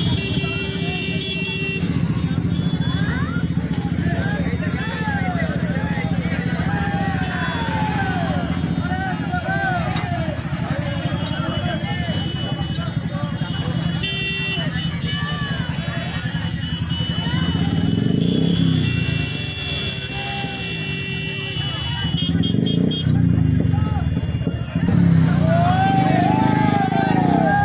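A train passes close through a level crossing with a steady low rumble, mixed with idling motorcycle engines and a crowd's shouting voices. The rumble swells toward the end as the engines grow louder.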